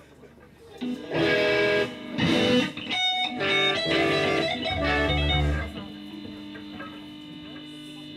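Electric guitars and bass of a live band over murmuring crowd: about a second in, a few loud chord stabs, then a short run of notes with heavy bass, stopping just before the last two seconds, after which a guitar tone is left ringing steadily at a lower level.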